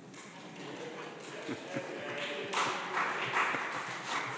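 Audience in a large chamber applauding: scattered claps build up and swell into full applause about two and a half seconds in, with some voices murmuring beneath.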